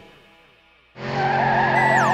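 Music fades out into a short near-silent gap. About a second in, a car sound effect starts: a steady engine tone, with a wavering tire squeal near the end.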